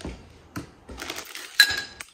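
Rustling of a cloth bag and plastic-and-card packaging as an item is pulled out of the bag, with one short ringing clink of hard objects knocking together about one and a half seconds in.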